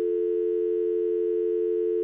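Telephone dial tone: a steady, unbroken two-note hum, heard as a caller's line goes dead at the end of a phoned-in message.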